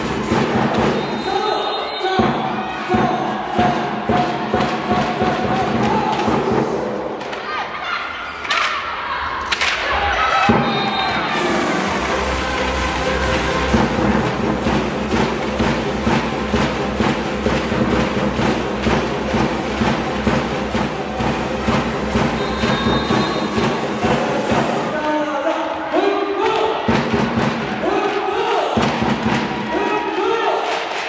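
Loud arena music with a heavy beat and constant thumping, with crowd noise underneath; the song changes about ten seconds in.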